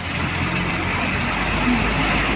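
Inside the cabin of a moving bus: a steady low engine drone under an even hiss of road and wind noise.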